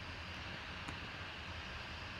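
Steady low hiss and hum of room background noise, with nothing else standing out.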